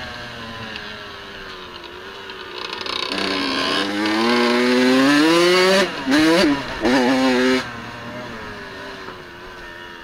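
Dirt bike engine heard from on board: it runs off-throttle, then accelerates with rising pitch, breaks off briefly twice around six and seven seconds in, and then backs off and slows down with falling pitch for the last couple of seconds.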